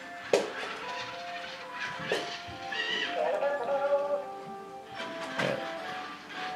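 Dash toy robot driving along a drawn path, knocking sharply three times as it goes over the bumps between foam tiles and floor. Steady music-like electronic tones run under it, with a short chirping glide about halfway through.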